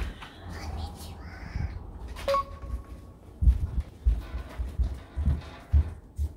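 Voices calling a greeting, then footsteps thudding on a wooden floor, about three steps a second in the second half. A short high tone sounds between the two.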